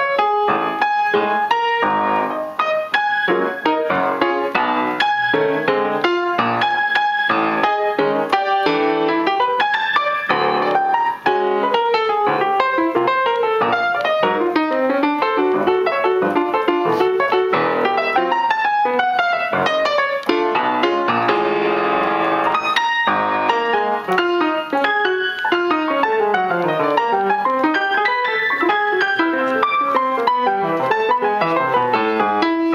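Grand piano playing jazz: fast runs of notes, many of them falling, with a thick, massed cluster of notes about two-thirds of the way through.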